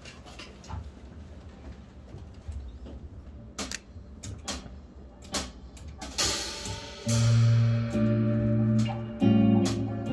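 Rock band starting a song live: a few sharp ticks, then a cymbal wash about six seconds in, and about a second later electric guitars and drums come in with loud held chords that change every second or so.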